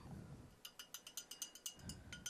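Faint quick clinking, about eight light ringing taps a second, of a paintbrush knocking against the sides of a glass water jar as it is rinsed.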